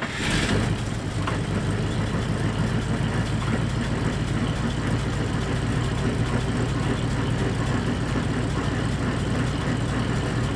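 A 1940 Cadillac's flathead V8 engine catching with a short loud burst right at the start, then idling steadily.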